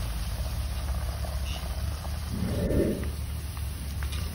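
Soya chunks deep-frying in a large iron wok of hot oil, sizzling steadily over a constant low rumble, with a wire slotted spoon stirring through the oil. A brief louder sound comes a little past halfway.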